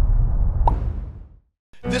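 Intro sting of an animated logo: a deep, low swell with a short bright blip about two-thirds of a second in, fading out after about a second and a half. A man's voice starts right at the end.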